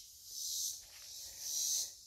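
Faint high-pitched chorus of insects, swelling and fading twice.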